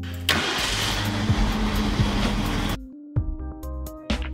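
1967 Ford Mustang engine starting up and running, beginning a moment in and cutting off suddenly about three-quarters of the way through, over background music.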